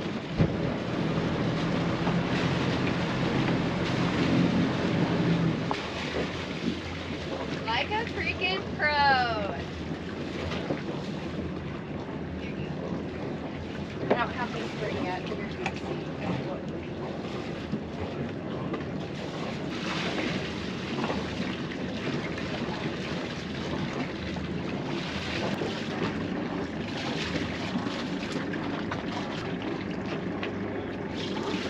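A sailboat's inboard engine running steadily at low speed as boats come alongside to raft up, with wind on the microphone and people calling out. A brief high squealing is heard about eight seconds in.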